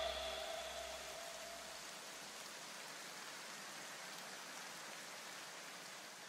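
The last tones of electronic background music die away in the first second or two, leaving a faint steady hiss.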